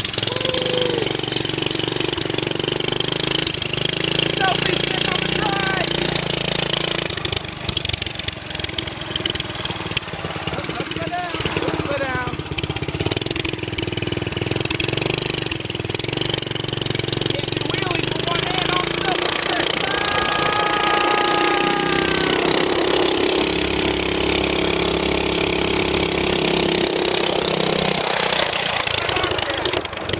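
Small engine of a mini trike running while it is ridden, its low note weakening and returning a few times, with a spell of clicks and knocks about a third of the way in.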